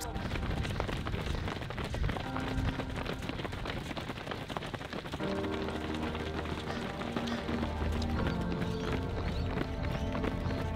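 Many quick footfalls of a group of runners on a paved path, with background music under them that grows fuller about halfway through.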